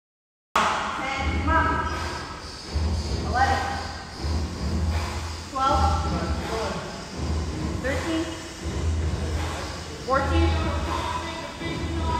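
Sound cuts in about half a second in. After that, a man's voice calls out about every two seconds over background music with a steady low beat.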